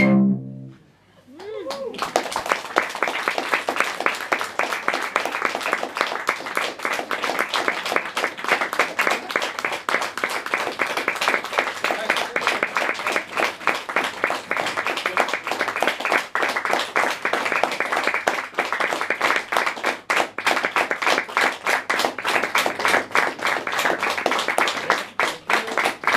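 A moment of silence, then audience applause that starts about two seconds in and goes on steadily.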